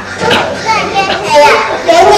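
Young children speaking.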